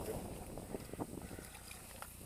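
Wind rumbling on the microphone, with a couple of brief knocks about a second in.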